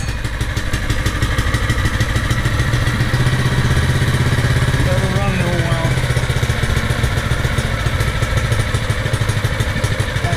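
Small single-cylinder gas engine on a Central Machinery vibratory plate compactor, freshly pull-started with the choke on and running steadily at idle.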